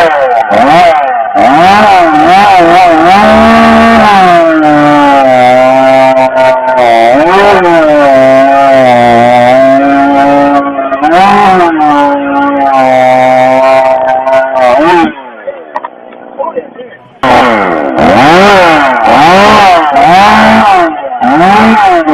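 Husqvarna 562 XP two-stroke chainsaw run at high revs through a timber block, its pitch repeatedly sagging and recovering as the chain bites into the cut. About two-thirds of the way through it falls away sharply for a couple of seconds, then runs high again.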